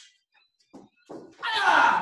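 Bare feet landing on a padded martial-arts mat during a skip and jump kick, then a loud shouted karate kiai ("hi-yah") in the second half.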